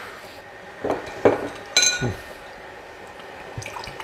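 A drinking glass being handled on a counter: a few light knocks and one ringing clink about halfway through, with some liquid sounds.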